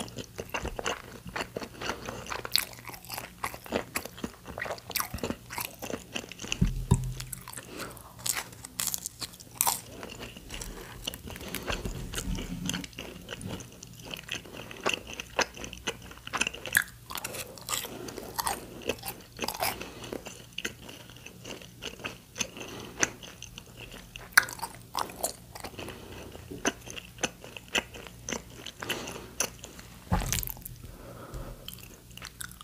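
Close-miked eating: a person chewing and biting spicy tteokbokki and fried snacks, with many short, sharp, wet clicks and crunches of mouth and food. Two low thumps, about seven and twelve seconds in.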